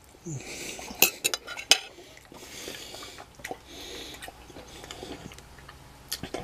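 A metal fork clinking and scraping against a dinner plate as food is cut and picked up, with a few sharp clinks close together about a second in.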